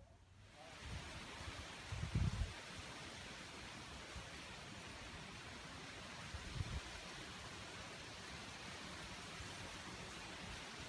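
A steady rushing hiss of outdoor noise, with low thumps about two seconds in and again near 6.5 s.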